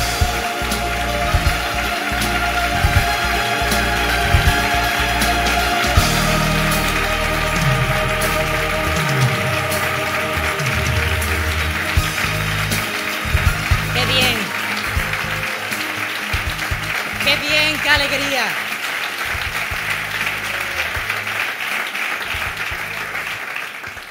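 Audience applauding over loud music played in the hall. The music thins out in the second half, leaving the clapping and a few voices calling out.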